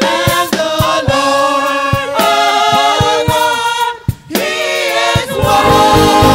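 Live gospel worship singing: a woman's lead vocal with backing singers over a band with a steady beat. Near the end the band swells in with sustained horn-like tones.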